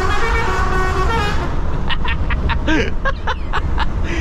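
Lorry air horn sounding a held chord of several tones, which cuts off about a second and a half in, over the steady drone of the truck's engine and road noise in the cab. A few short sharp sounds follow.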